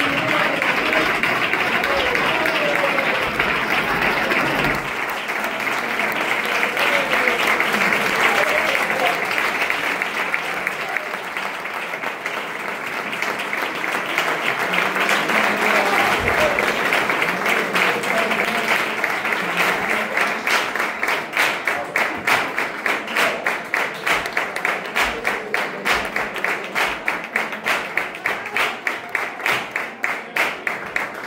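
Audience applauding, with voices calling out over the clapping in the first half. About two-thirds of the way through, the applause turns into rhythmic clapping in unison, about two claps a second.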